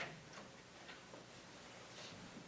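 Quiet room with a sharper click right at the start, then a few faint, irregularly spaced light ticks.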